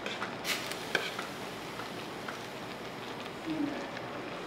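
A steel ladle stirring a pan of tteokbokki, clinking and scraping against the pan a few times in the first second, over a steady background hiss.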